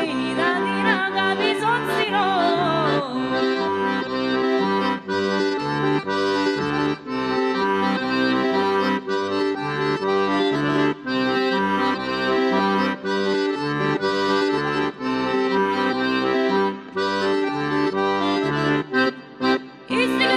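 Diatonic button accordion (organetto) playing an instrumental passage of a Griko folk song, with acoustic guitar underneath. A woman's singing trails off in the first few seconds and comes back at the very end.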